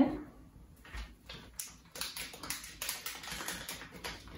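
Light clicking and scraping of a laptop RAM module being fitted into its slot, mixed with crinkling of its plastic packaging. A few scattered clicks come first, then a quick dense run of them through the second half.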